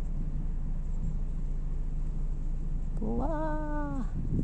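A steady low background hum with no distinct events. Near the end, a person's voice holds one drawn-out vowel for about a second, rising at first and then level.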